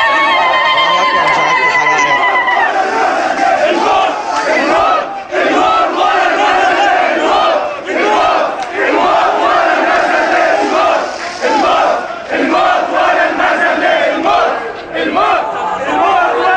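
Crowd of demonstrators chanting slogans loudly, in phrases broken by short pauses. Over the first two seconds or so, a single held voice stands out above the crowd.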